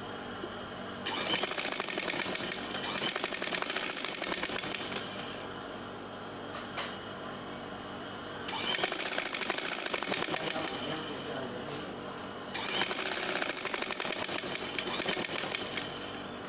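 Vintage black sewing machine stitching a pleat into cloth, running in three spells of a few seconds each with short quieter pauses between.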